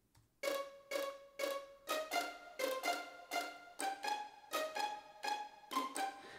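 A software string-ensemble patch plays a line of short, detached notes, about two a second, starting about half a second in. The notes run through Logic's Space Designer convolution reverb, and each one trails a reverb tail that is far too long.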